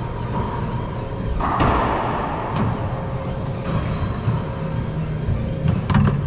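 Sharp knocks of a racquetball echoing around an enclosed court, the loudest about one and a half seconds in, with a short ring after it, and another bounce near the end, over a steady background of sound.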